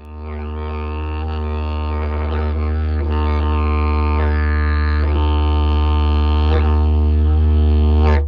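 Didgeridoo drone on one low, unchanging note, its overtones shifting as it is played. It swells in over the first second or so and then holds steady.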